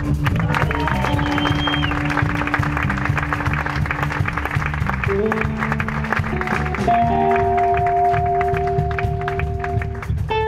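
Live rock trio playing: electric bass, electric guitar and drum kit, with fast, busy drumming under long held notes. The held notes step up in pitch about five seconds in and again about seven seconds in.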